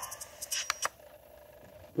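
Quiet room tone with about four short, sharp clicks clustered between half a second and a second in, after the faint tail of the TV soundtrack fades.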